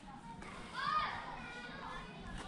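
Children's voices calling out in the distance, with one high call that rises and falls about a second in.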